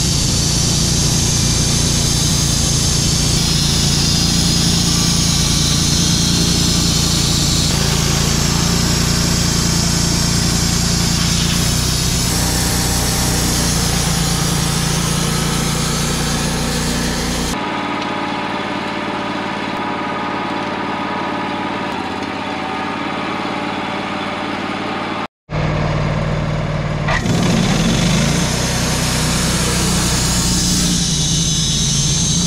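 Wood-Mizer LT35 bandsaw mill running steadily, its engine driving the band blade through a log as the head travels along the cut. The deep engine note drops away for a stretch past the middle, and the sound cuts out for an instant about 25 seconds in before the mill is heard again.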